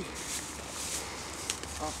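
A plastic bag rustling as it is handled, in short crinkly bursts in the first second, with a single sharp click about one and a half seconds in.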